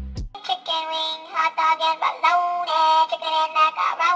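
Dance music with a high-pitched sung melody and little bass. It starts about a third of a second in, right after a bass-heavy track fades and cuts off.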